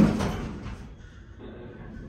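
Elevator car doors closing, ending in a sharp thud about when they meet, which dies away within half a second; after that there is only faint low background noise.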